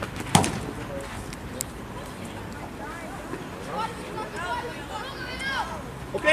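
Faint shouting voices across an outdoor football pitch, over a steady outdoor background. There is one loud, sharp thump about a third of a second in.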